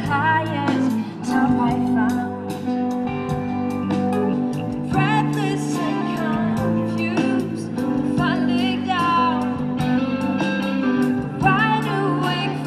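Live band playing through PA speakers, a woman singing lead over electric guitar, bass, drums and keyboard, with steady drum and cymbal hits.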